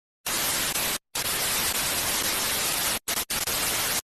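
Television static hiss, an even white-noise sound effect that cuts out briefly three times.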